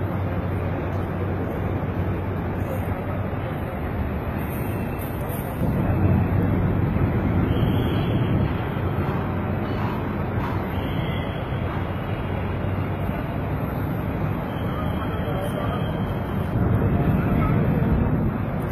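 Steady city traffic noise with indistinct voices of people nearby, a little louder about six seconds in and again near the end.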